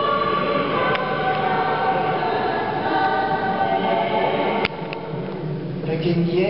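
A church choir singing long held notes at Mass. A sharp click comes about three-quarters of the way through, after which the singing is quieter.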